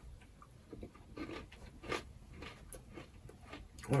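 Faint chewing of a Butterfinger bar, its crisp peanut-butter centre giving a few soft, irregular crunches.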